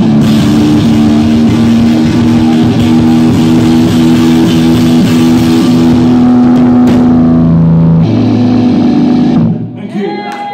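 Live rock band of electric guitar, bass guitar and drum kit playing loud, heard through a phone's microphone. The song closes on long held chords that cut off suddenly near the end.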